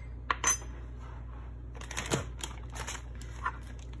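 Metal measuring spoon clinking against a small ceramic bowl as seasoning is tapped off: two sharp clinks about half a second in, then a run of lighter clicks and taps a second later, over a steady low hum.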